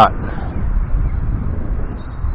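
Wind buffeting the microphone: a steady low rumble with no clear tones.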